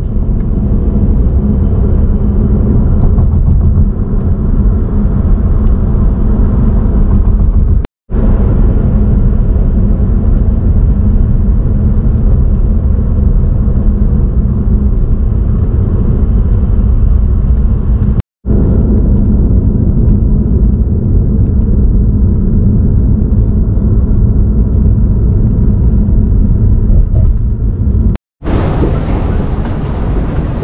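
Steady low rumble of a car being driven, heard from inside the cabin. It cuts out for a split second three times. Near the end it gives way to a brighter, hissier background.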